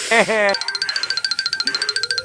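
Comic sound effects: a wobbling boing lasting about half a second, then a fast, high-pitched trill of repeated bell-like notes.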